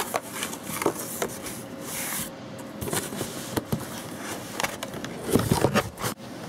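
A cardboard box being opened and handled by hand: flaps scraping and rustling with scattered clicks, and a run of louder knocks and bumps near the end.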